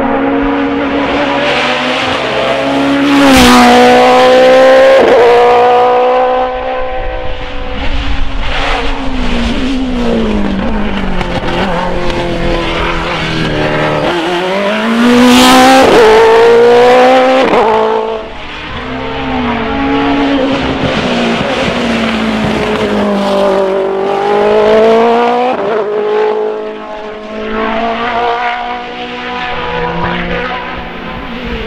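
Hill-climb racing cars driving hard up the course, engines revving high and dropping repeatedly through gear changes. The loudest passes come about four seconds in and again about fifteen seconds in.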